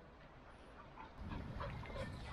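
Faint short animal calls starting about a second in, over a low rumble.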